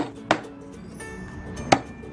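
Cleaver chopping through a raw chicken onto a round wooden chopping block: three sharp chops, two in quick succession at the start and one near the end.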